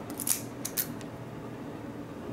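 Metal keys handled in the fingers, clicking and scraping against each other and against a small lock cylinder, with a few short, sharp clicks in the first second.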